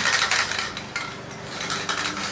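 Aerosol can of high-build primer filler being shaken, its mixing ball rattling in quick clicks, densest at the start and again briefly near the end.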